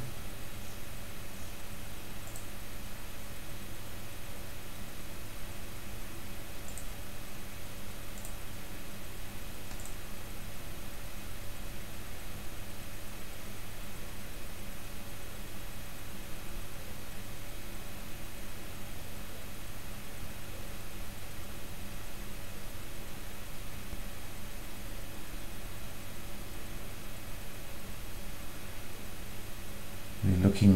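Steady microphone hiss with a low electrical hum, and a few faint mouse clicks in the first ten seconds or so.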